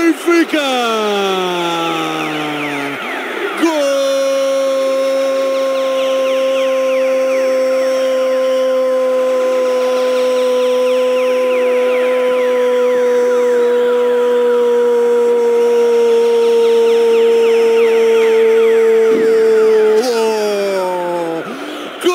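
A radio football commentator's drawn-out goal cry. A first shout slides down in pitch over about three seconds, then one long note is held for about sixteen seconds and falls away at the end.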